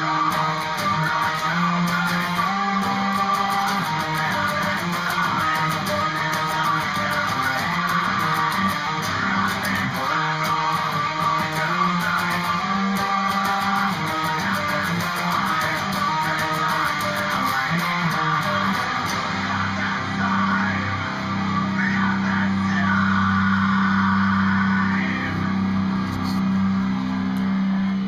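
Electric guitar playing metalcore riffs, with busy changing note patterns that settle into long sustained chords over the last several seconds.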